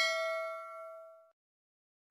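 A bright bell-like ding that rings and fades out over about a second: the notification-bell sound effect of a subscribe-button animation.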